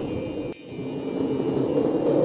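Intro jingle of sustained, shimmering chime-like tones that dip briefly about half a second in and then carry on.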